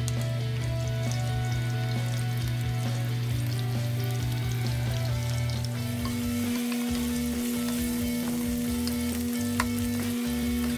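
Freshly added chopped onion sizzling and crackling in hot oil in a nonstick wok, stirred with a wooden spatula. Sustained low notes of background music run underneath, the bass note changing about six seconds in.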